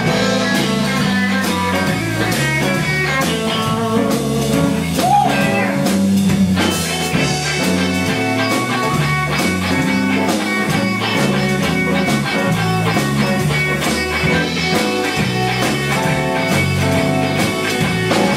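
Live blues band playing, electric guitar to the fore over bass and drums.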